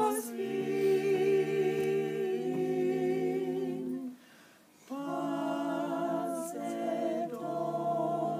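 A mixed-voice quintet singing a slow lullaby a cappella in Esperanto, in close harmony with long held chords. The voices break off for a breath about four seconds in, then come back together on a new phrase.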